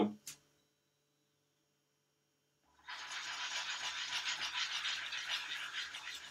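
Beaten egg sizzling in a hot frying pan as the omelette sets, a steady fine crackle that sets in suddenly about three seconds in after near silence.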